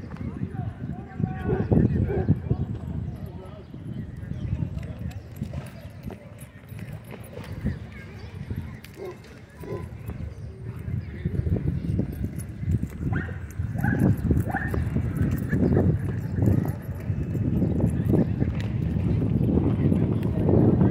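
Dogs chasing and play-fighting on dry dirt, their paws thudding unevenly. A quick run of short barks comes a little past the middle.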